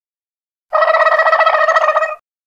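An electronic buzzer-like sound effect under a title card: one loud, steady-pitched buzzing tone with a fast flutter. It starts suddenly after silence, under a second in, and lasts about a second and a half.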